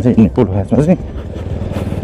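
Motorcycle engine running steadily while riding along a dirt track, heard plainly once the voice stops about a second in.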